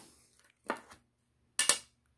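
Folding knives being handled over a box of knives: two brief clicks, the second a quick cluster of light metallic clinks near the end.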